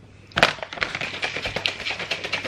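Kitchen counter handling noise: a sharp knock about half a second in, then a run of light clicks and rustling as food containers and a paper bag are handled.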